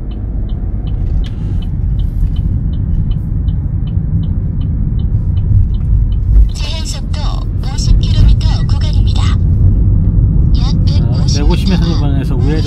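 A car's turn-signal indicator ticks steadily, just under three ticks a second, over low engine and road rumble as the car pulls away and turns left. The ticking stops about five and a half seconds in, as the signal cancels after the turn.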